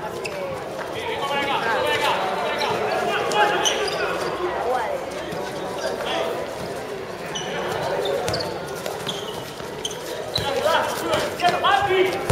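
A handball bouncing on a concrete court, with players and onlookers calling out over it, the voices getting louder near the end.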